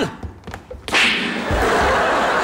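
A single sharp slap about a second in, followed by a live studio audience laughing.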